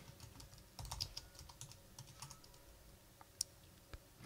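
Faint typing on a computer keyboard: scattered key clicks, one sharper than the rest about three and a half seconds in.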